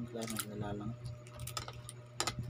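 Close-up eating sounds of balut being spooned from its shell and chewed: a short hummed voice sound, then a few sharp clicks and smacks, over a steady low hum.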